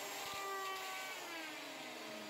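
Craftsman router motor whirring, its pitch slowly falling.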